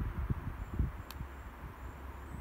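Faint, irregular low thuds and rumble from the camera being handled while filming, with one short sharp click about a second in.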